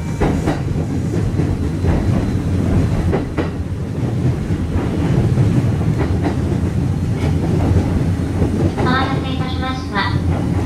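Kintetsu electric commuter train running along the track, heard from inside the front car: a steady rumble of wheels on rail with occasional clicks over rail joints.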